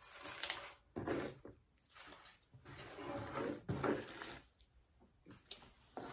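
Red crinkle paper shred rustling and crunching in several short bursts as it is pushed down by hand between items packed into a small metal truck. There is one sharp little click near the end.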